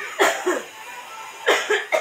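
A person coughing in two short bouts, about a second apart.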